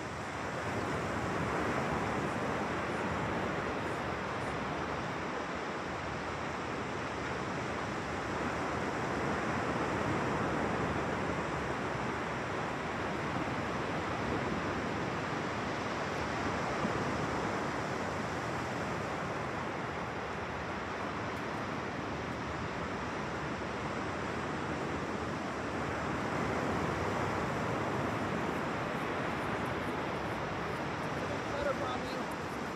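Ocean surf breaking on the beach: a steady wash of noise that swells and eases slowly every several seconds.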